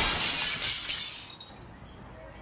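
A produced sound effect in the song track: a noise swell peaks at the very start in a bright, shattering hit that fades out over about a second and a half, leaving a low hush.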